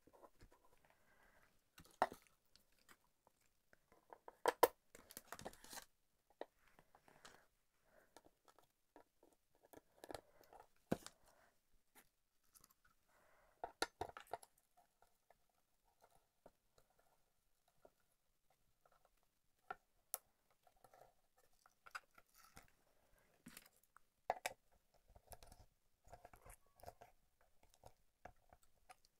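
Faint, scattered clicks, taps and scrapes of hard resin cake-stand tiers being handled and fitted onto a central threaded rod, in irregular short bursts with quiet gaps between them.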